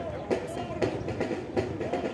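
Rhythmic stamping of soldiers' boots as troops march in formation, about three to four sharp steps a second.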